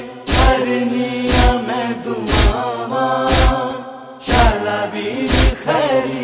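Noha recitation: voices chanting a drawn-out line in chorus over a deep thump that lands about once a second, keeping the slow lament beat. The sound thins out for a moment about four seconds in before the chant and beat return.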